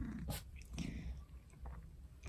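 Domestic cat purring faintly while being scratched and stroked, with a soft rustle of a hand in its fur and one sharp click shortly after the start.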